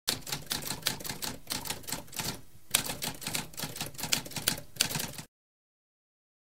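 Typewriter keys clattering in a fast, uneven run of keystrokes, with a brief pause about halfway through, cutting off abruptly near the end.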